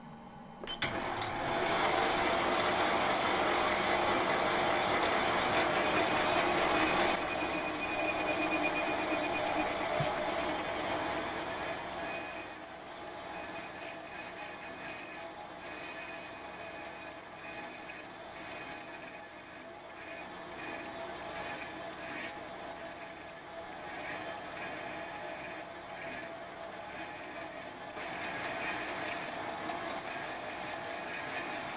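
Metalworking lathe running while a parting tool plunges into a turning piston to cut its ring groove. From about ten seconds in, the cut gives a high, steady squeal that drops out briefly every second or two.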